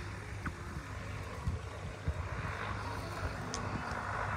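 Wind buffeting the microphone as a fluctuating low rumble, with a few light rustles and snaps from leafy plants being handled.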